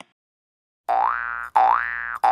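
Cartoon 'boing' spring sound effect, starting about a second in and repeating half a second later, each one a twanging tone that slides upward in pitch.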